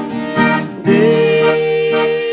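Acoustic guitar strummed together with a piano accordion playing a hymn melody, with a sustained note held from about a second in.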